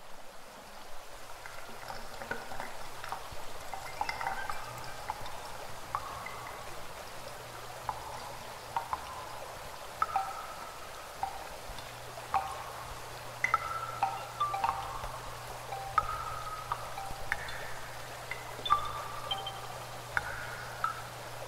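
Small woodland stream trickling into a shallow pool, making irregular short, clear plinking notes, one to a few a second, over a faint watery hiss and a steady low hum.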